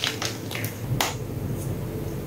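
Reformed gym chalk crunching and cracking as it is crushed by hand, with one sharp crack about a second in and small dry crackles around it.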